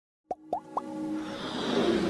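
Animated logo-intro sound effects: three quick pops, each sliding up in pitch, in the first second, then a musical swell that grows steadily louder.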